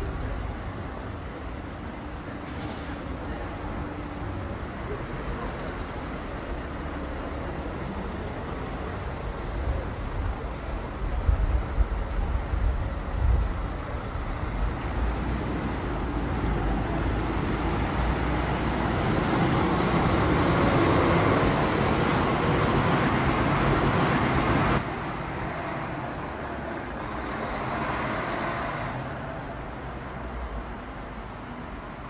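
Town street traffic: a car approaching and passing close, growing louder through the middle until the sound cuts off suddenly about two-thirds of the way in. Another vehicle swells past near the end.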